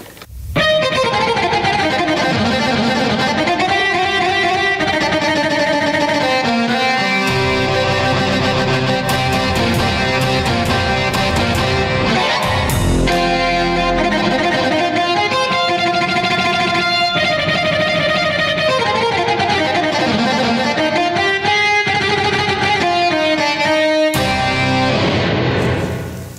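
Roland FR-4x V-accordion played with its electric guitar voice: a continuous run of melody and chords that sounds like an electric guitar, with a deep low swell about halfway through.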